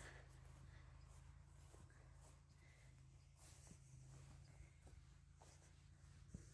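Near silence: a faint steady low hum with a few soft, scattered clicks.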